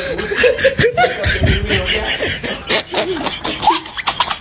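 Boys laughing, in short quick bursts.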